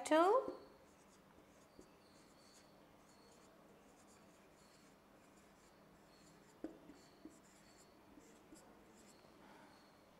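Marker pen writing on a whiteboard: faint, squeaky scratching strokes as the letters are written, with a single light knock about six and a half seconds in.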